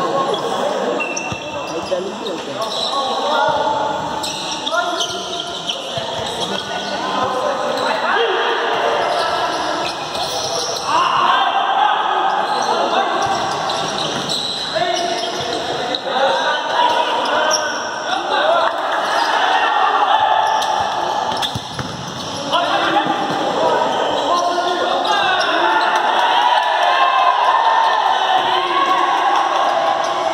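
A futsal ball being kicked and bouncing on a hard indoor court, over players' shouts echoing in the gymnasium.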